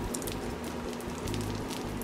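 Spiked uncapping roller rolled across a frame of capped honeycomb, its needles piercing the beeswax cappings with a faint run of tiny crackling clicks.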